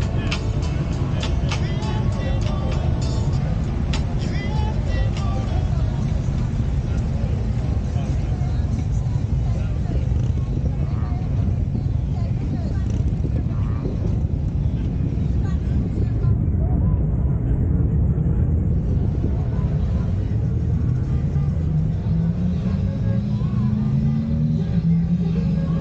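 Polaris Slingshot three-wheeled roadster's engine running with a steady low rumble as it drives through a parking lot; near the end the engine revs up, its pitch rising steadily.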